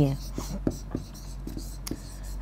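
A pen writing on a board: faint scratching with a few light taps as a word is written out.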